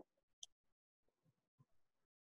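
Near silence: a pause on the webinar audio line, with one faint brief click about half a second in.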